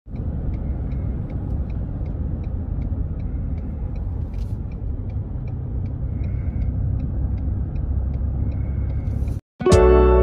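Steady road and engine rumble inside a moving car's cabin, with a light, even ticking about three times a second. Near the end the sound cuts out for a moment and plucked guitar music begins.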